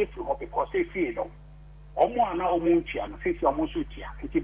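Speech only: a man talking, with a short pause in the middle, over a steady low hum.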